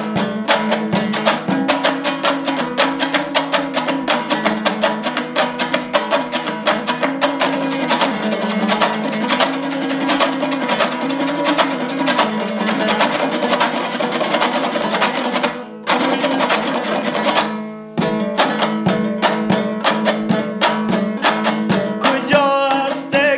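Afghan Hazaragi dambura, a two-stringed long-necked lute, strummed rapidly in a driving folk rhythm with a wavering melody. The playing breaks off briefly twice about two-thirds of the way through.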